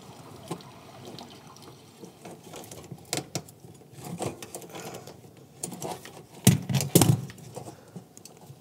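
Pliers clicking and scraping on the brass elbow fitting of a dishwasher water inlet valve as the supply water line is worked loose, with two sharper knocks near the end.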